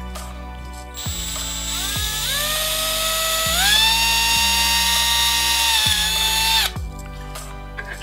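Milwaukee Fuel brushless cordless drill running a bit through a hollow plastic toy bat: a motor whine whose pitch steps up twice as it speeds up, then holds steady before cutting off shortly before the end. Background music plays underneath.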